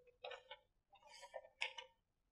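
Faint rustles and clicks of paper sheets being handled: a handful of short, crisp bursts.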